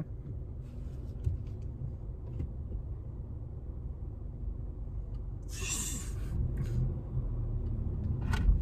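Cabin-heard rumble of a 2018 Honda Civic Si's 1.5-litre turbo four-cylinder and road noise as the manual car pulls away in first gear, growing gradually louder. A short hiss comes about five and a half seconds in.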